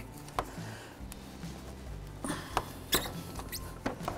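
A few scattered clicks and squeaks from an oil filter wrench gripping and turning an over-tightened oil filter as it is worked loose.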